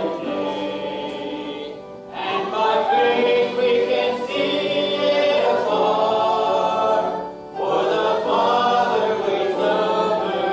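Church congregation singing a hymn together, in long held phrases with short breaks between lines about two seconds in and again past seven seconds.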